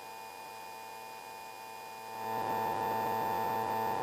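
Steady cabin hum of a Sting S3 light-sport aircraft in level cruise, heard through the intercom: a drone of several fixed tones that gets louder about halfway through.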